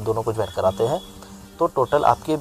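A man speaking in Hindi, with a brief steady hum in a pause about halfway through.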